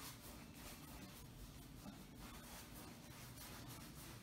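Faint, repeated strokes of a paintbrush scraping across stretched canvas, working in acrylic paint in an irregular rhythm.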